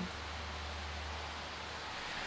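A short break in the song, filled by a faint, even hiss with a steady low hum underneath.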